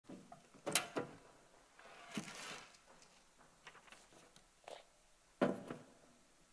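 Knocks and rustling from a Bible and a tablet being handled and set down on a lectern: several short knocks, with a brief papery rustle about two seconds in.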